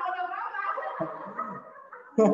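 A person laughing, a wavering, gurgling laugh that trails off about halfway through.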